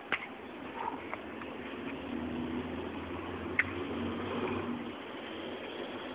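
Faint outdoor background noise with a low hum that swells in the middle, and a few short sharp clicks, one just at the start and one about three and a half seconds in.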